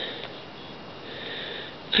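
A woman sniffling, drawing breath through her nose, with a longer breathy sniff in the second half.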